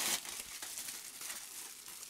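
Plastic packaging crinkling in the hands as a small vinyl figure is pulled from its foil bag and its bubble wrap is unwrapped. A quiet, continuous run of small crackles, a little louder at the start.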